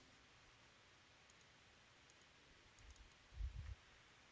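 Near silence with a few faint computer mouse clicks and a cluster of soft low thumps a little past three seconds in.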